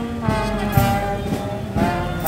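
Brass band playing, trumpets and trombones holding long notes over a drum beat that falls about twice a second.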